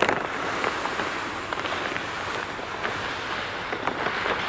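Granular Milky Spore pouring from a bag into a drop spreader's hopper: a steady rushing hiss with a few faint ticks of grains.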